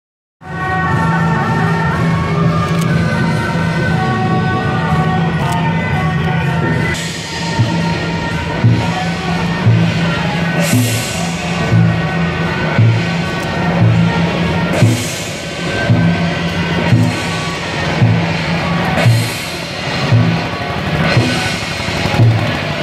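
Procession music: a melody of steady held notes for the first several seconds, then a drum beating a steady rhythm with a cymbal crash about every four seconds.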